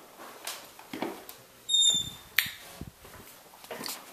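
Interior door being opened by its knob: a short high squeak, then a sharp latch click just after the two-second mark, among a few soft handling knocks.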